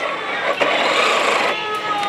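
Electric drive motor and plastic gearing of a toy radio-controlled car whirring as the car is driven slowly. The whirr swells about half a second in and eases after a second, leaving a thin whine near the end.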